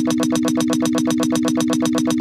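Electronic stutter effect: a tiny slice of audio repeated about twelve times a second over a steady held low tone, making a buzzing, machine-gun-like loop at an even level.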